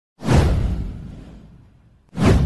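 A whoosh sound effect for an animated intro: one swish that comes in sharply about a fifth of a second in, with a low rumble under it, and fades away over about a second and a half.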